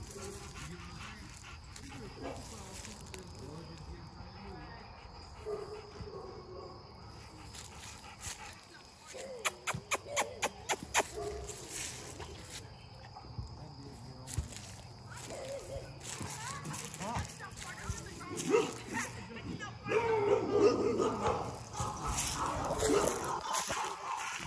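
Dogs whining and barking now and then. A quick run of sharp clicks comes about ten seconds in, and the sound grows louder over the last few seconds.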